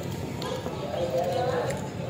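Faint background talk from other people, with a couple of light clicks.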